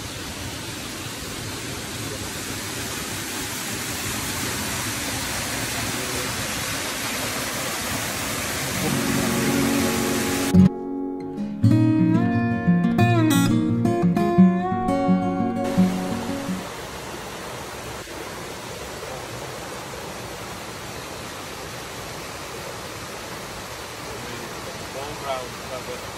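Steady rush of a rocky stream and waterfall, growing a little louder over the first nine seconds. A short passage of music with plucked-string notes then comes in, and for about five seconds the water sound drops out. The water returns, quieter, about sixteen seconds in.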